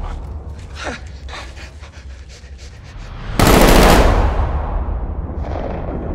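Gunfire: a quick run of shots in the first few seconds, then one very loud blast about three and a half seconds in that dies away slowly.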